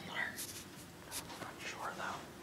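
A person whispering faintly close to the microphone, in a few short breathy bursts.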